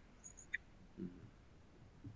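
Near silence: faint room tone between speakers, with a few faint short high chirps about half a second in and a brief faint low sound about a second in.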